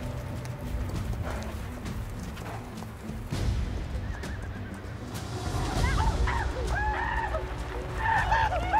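Horses whinnying over a film score with a low, steady drone; the whinnies come in the second half as mounted riders arrive.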